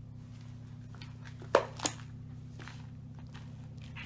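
A gray wolf pup and a border collie pup mouthing a plush toy: faint chewing and scuffling, with two sharp clicks about a third of a second apart, about a second and a half in. A steady low hum runs underneath.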